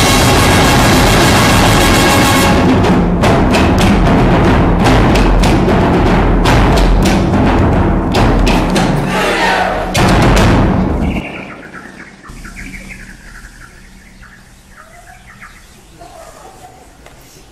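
Concert band playing a loud, dense passage with heavy percussion hits, which breaks off suddenly about eleven seconds in. What follows is much quieter, with scattered short high squeaks and chirps.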